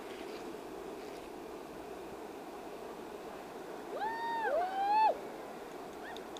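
Steady rushing of river rapids, with two high, drawn-out calls from a person's voice about four seconds in, the first falling away at its end and the second rising.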